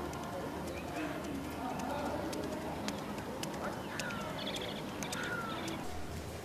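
Birds calling, with short falling chirps and a quick run of high chirps in the second half, over a murmur of distant voices.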